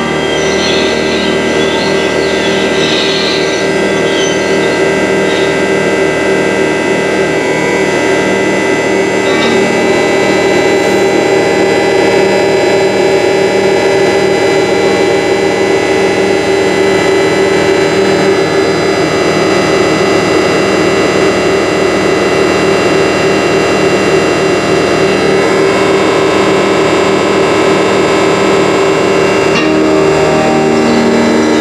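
Loud, dense noise music: many steady synthesized square-wave and sine tones from a live-coded colour-to-sound synthesizer, layered with a bowed acoustic guitar. A low layer underneath pulses at an even rate.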